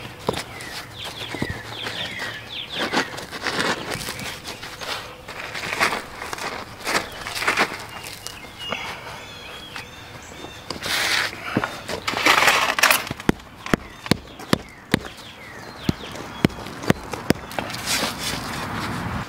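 Gritty scraping and crunching of crushed stone and dry Quikrete concrete mix being shovelled and worked by hand around concrete landscape edging blocks. It ends with a run of sharp clicks and knocks over the last few seconds.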